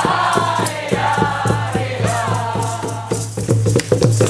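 A group of voices singing a chant to a steady quick beat of hand drum and shaken rattles, over a continuous low drone.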